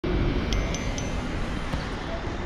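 Smartphone delivery-app notification chime: three quick high pings signalling a new order, over steady outdoor wind and street noise.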